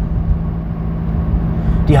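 Steady low rumble with a constant hum, heard inside a car's cabin: the car's engine running.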